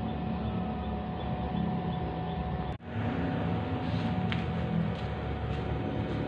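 Steady electric hum from a single-12-volt-battery converted electric bicycle's powered drive (voltage converter and brushless hub motor), with a thin steady whine over it; it drops out briefly a little before halfway.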